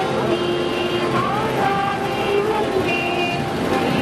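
Street procession sound: many voices and music with held notes, over the low steady rumble of a vehicle running.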